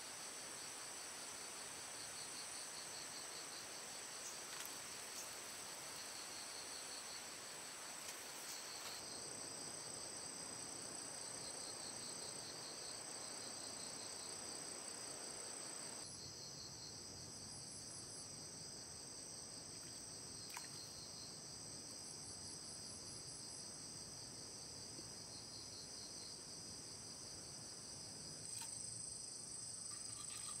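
A chorus of insects trilling over a faint steady hiss: several steady high-pitched tones layered together, one of them pulsing rapidly.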